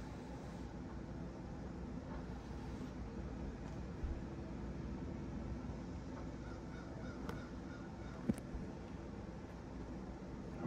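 Quiet room tone: a steady low hum with a few faint clicks from the propeller being handled.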